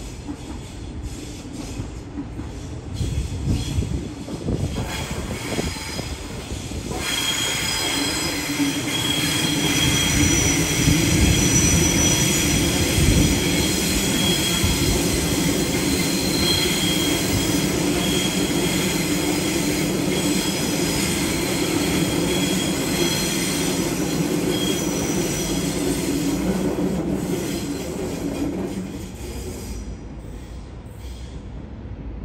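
A Sydney Trains Waratah double-deck electric train passes. Low rumbling and knocking at first, then from about seven seconds in a steady low hum with high wheel squeal that comes and goes, fading away near the end.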